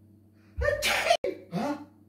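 A man's loud sneeze: a voiced 'ah' running into a sharp, noisy burst that cuts off abruptly, followed a moment later by a short vocal cry rising in pitch.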